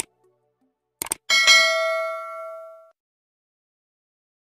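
Subscribe-button animation sound effects: a click, then two quick clicks about a second later, followed by a bright notification-bell ding that rings and fades over about a second and a half.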